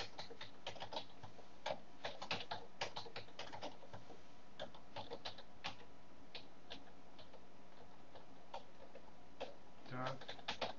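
Faint computer keyboard typing: quick irregular runs of keystroke clicks that thin out to occasional single keystrokes in the second half.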